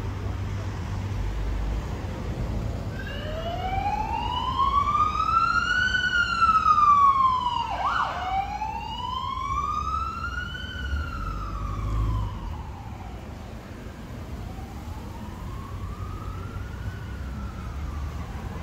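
Emergency vehicle siren in a slow wail, its pitch rising and falling about once every five seconds. It is loudest around a third of the way in and fainter near the end, over low street traffic rumble.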